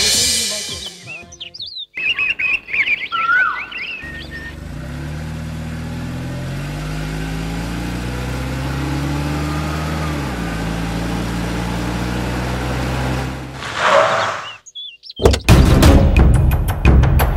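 Birds chirping for a couple of seconds, then a car engine running steadily for several seconds as a car pulls up, its pitch dropping about ten seconds in as it slows. A short burst of noise comes near the end.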